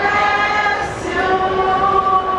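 Music with several voices singing long held notes together, choir-like.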